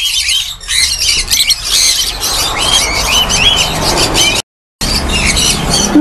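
A cage of Fischer's lovebirds chattering, with many short, high calls overlapping without a break. The sound drops out completely for a moment about four and a half seconds in.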